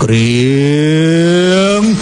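A single long, low, drawn-out call, held for nearly two seconds, rising slowly in pitch and breaking off sharply near the end.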